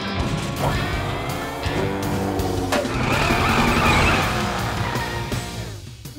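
Cartoon background music with mechanical vehicle sound effects mixed in, for an animated crawler crane moving into position.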